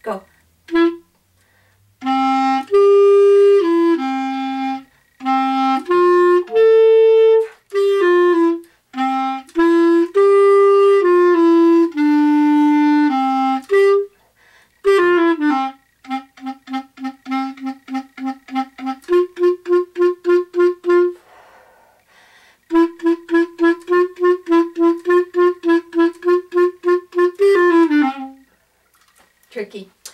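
Solo clarinet playing one part of a beginner lesson-book duet: a phrase of held notes, then from about halfway a long run of short, quickly repeated notes that stops a couple of seconds before the end.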